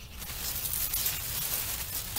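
Rustling of wet pepper-plant leaves brushing against the camera as it pushes into the foliage, a steady crackly scuffing.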